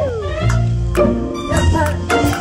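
Background music of held notes, opening with a quick glide falling in pitch.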